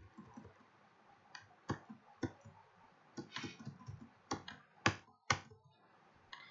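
About ten faint, sharp clicks at uneven spacing, from a computer being used to step through presentation slides.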